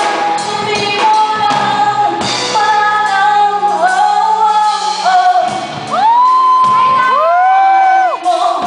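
A live band with a female lead singer, electric guitars, keyboard and drums, heard from the audience in a large echoing hall. About five seconds in the low backing drops out and she holds long, sliding sung notes to the end.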